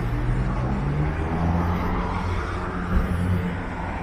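Street traffic, with a vehicle engine running close by, its low hum shifting in pitch, and a short thump about three seconds in.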